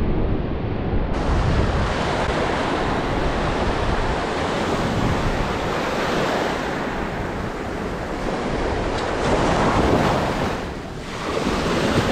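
Ocean surf breaking close by and washing up over a pebbly beach, a continuous rush that swells with a surge about ten seconds in. Wind buffets the microphone.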